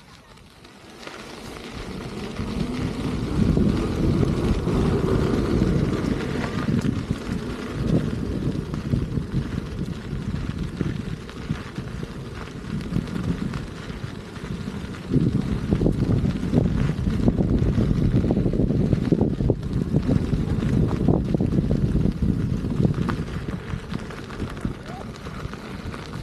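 Wind buffeting the microphone of a camera moving along with an electric unicycle. It builds up from about a second in and stays loud and uneven.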